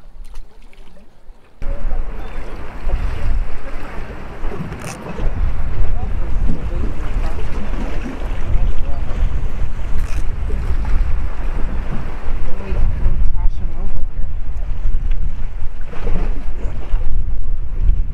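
Wind buffeting the microphone, a loud low rumbling rush that starts suddenly a second and a half in, over the wash of the inlet's water.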